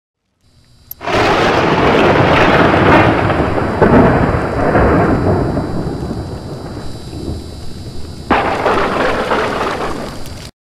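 Logo-intro sound effect of loud, rumbling, thunder-like crashing noise: a sudden crash about a second in that slowly dies away, then a second sudden crash a little after eight seconds.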